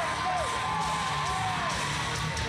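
Rock entrance music playing over a PA, with members of the crowd yelling and whooping over it.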